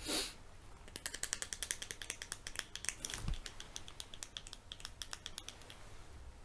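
Light, sharp taps and clicks on a plastic eyeshadow compact, several a second and irregular, starting about a second in and stopping shortly before the end. There is a brief soft rustle at the start and one dull low thump about three seconds in.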